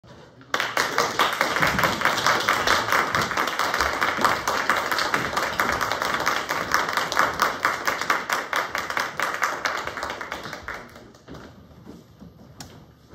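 Audience applauding, the clapping starting suddenly about half a second in and dying away near the end.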